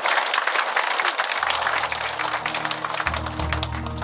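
Large audience applauding steadily, with music fading in underneath from about a second and a half in and growing louder as the clapping goes on.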